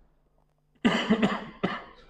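A man coughs: a sudden rough burst about a second in, followed by a shorter second one.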